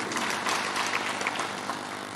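Steady low hum with an even background hiss.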